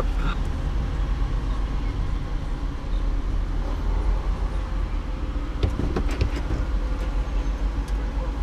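A vehicle's engine idling, a steady low rumble heard from inside the cabin, with a few short clicks and knocks about six seconds in.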